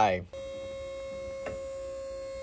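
Steady electric hum on one pitch from the break-test rig's motor, starting abruptly just after a voice, with a light click about one and a half seconds in.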